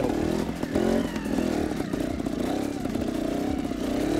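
Trials motorcycle engine running at low revs, its pitch wavering up and down as the rider feeds the throttle climbing a rocky hillside.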